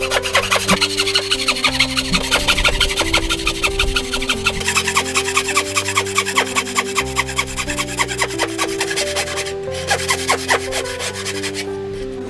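Wooden-framed bow saw cutting down into the end grain of a wooden post by hand, in quick back-and-forth strokes about three a second, with a short pause a little before the end. Background music plays underneath.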